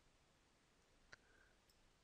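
Near silence: room tone with one faint computer mouse click about a second in.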